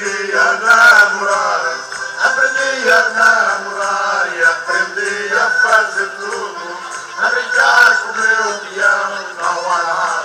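Live Portuguese folk music from a band on stage, amplified through PA speakers: male voices singing a lively song over instrumental accompaniment.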